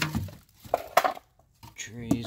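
Plastic storage containers and bagged supplies being shifted around inside a cardboard box: light clattering and rustling, with a couple of sharp knocks about a second in.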